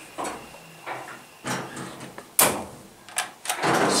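Metal doors in an elevator cab knocking and clicking, with one sharp clack about two and a half seconds in, then a louder sliding sound near the end.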